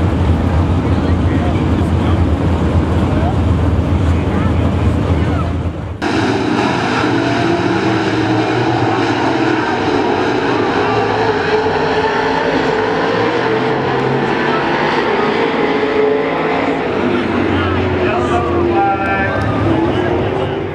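A steady low hum with noise for about the first six seconds. After a sudden change, dirt late model race cars' engines run at speed around the track, their pitch rising and falling as they pass.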